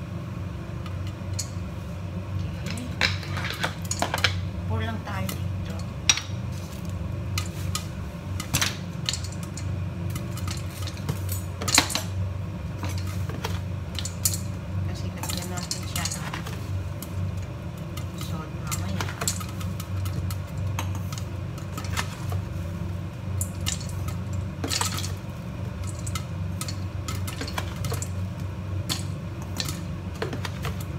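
Popcorn kernels popping in a lidded pot on a gas stove: a steady scatter of sharp pops and clicks as the kernels burst and hit the lid and sides, over a steady low hum.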